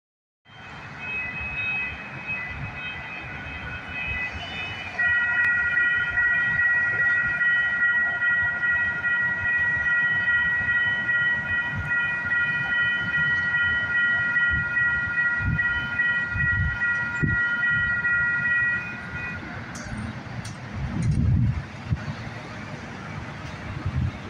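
Railroad crossing warning bells ringing steadily: a fainter bell first, then a louder one from about five seconds in. The bells fall silent after about nineteen seconds. A light rail train then approaches with a low rumble.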